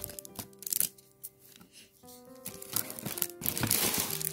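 Soft background music of held, sustained notes that change about halfway through, with light crinkling and rustling of paper and card being handled.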